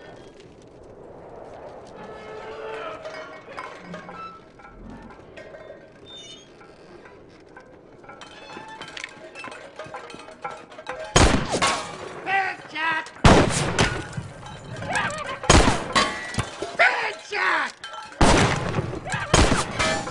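Movie gunfight: a quiet stretch of low desert ambience and score, then, from about halfway through, a gun battle of revolver and rifle shots in four or five quick clusters. Some shots are followed by whining ricochets off the bank teller's washboard-and-pots armour.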